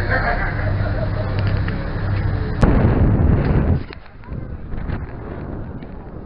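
A boat's engine drones steadily under passengers' chatter. About two and a half seconds in, a sharp click is followed by a loud rush of noise lasting about a second, which falls away to a softer hiss.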